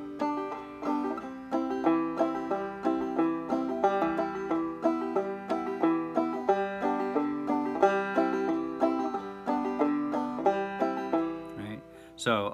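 Banjo in open G tuning played clawhammer (frailing) style: a fast, steady strum-thumb rhythm that runs on like a lawnmower engine, with the chords changing under it.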